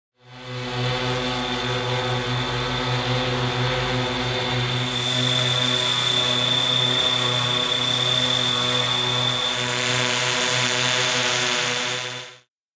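Yuneec quadcopter drone hovering close by: a steady propeller buzz with a thin high whine over it.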